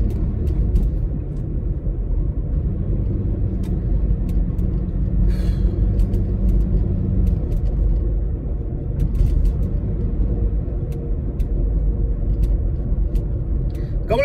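Road noise inside a moving car's cabin: a steady low rumble of tyres and engine while driving, with a few faint clicks.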